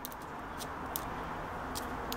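A few light clicks of metal alligator clips being touched together over a low steady background hiss. The short runs through a series safety lamp, so there is no spark snap.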